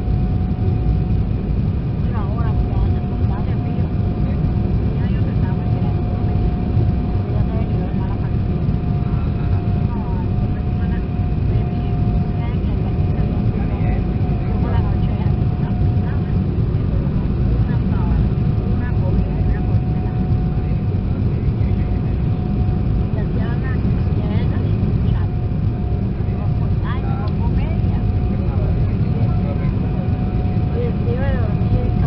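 Steady cabin noise of an Embraer 190 airliner on approach, heard from a window seat over the wing: a constant drone of its turbofan engines and rushing air, with a steady whine running through it.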